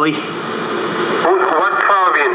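Recorded prank phone call playing back: a noisy hiss for about the first second, then a man's voice comes in over the phone line.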